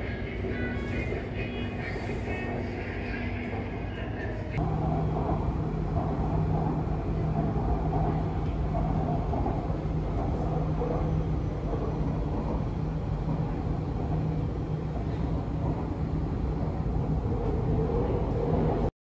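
Interior running noise of an elevated city train in motion: a steady rumble with high motor whine. About four and a half seconds in it changes abruptly to a louder, steadier low hum.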